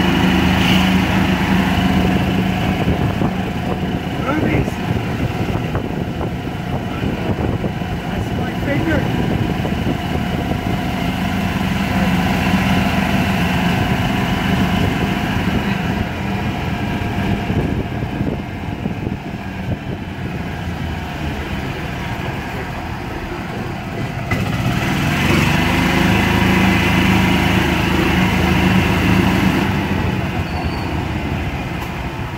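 A small vehicle engine running steadily as it drives along a street, with road noise. It is louder for the first few seconds and again over the last five, and eases off in between.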